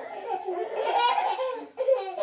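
Laughter in a high voice, with a brief pause near the end.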